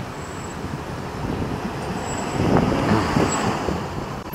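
Low, steady rumble of road traffic, swelling slightly about two and a half seconds in.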